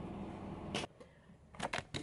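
Steady room hum that stops abruptly just under a second in, followed by a few short, sharp clicks near the end.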